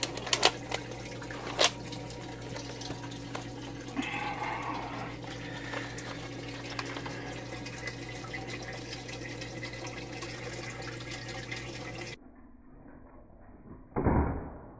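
Steady hiss with a low hum underneath, and a few sharp clicks in the first two seconds as a Nerf double-barrel blaster is handled. About twelve seconds in, the sound drops quieter and duller.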